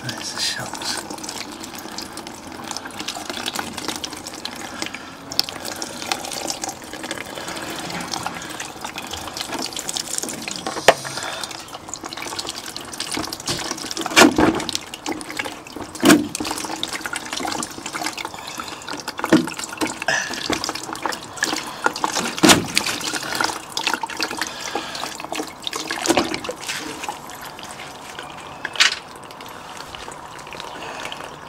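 Water running out of a plastic water bottle holed by crossbow bolts, broken by about seven sharp thumps as a 50 lb pistol crossbow is shot and its bolts hit the bottle, the loudest about 14 and 16 seconds in.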